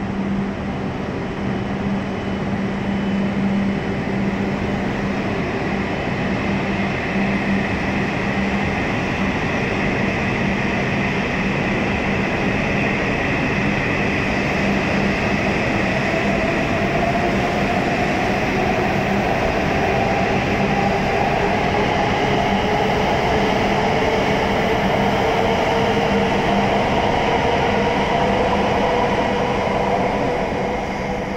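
E7 series shinkansen pulling out of the station and gathering speed past the platform, a continuous rolling rush of the train. From about halfway through, a whine rises steadily in pitch as it accelerates, while a steady low hum heard in the first several seconds fades away.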